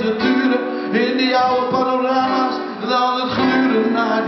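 Live band music led by a strummed acoustic guitar.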